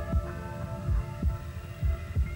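Slow heartbeat sound effect, deep paired thumps about once a second, over a held synthesizer drone.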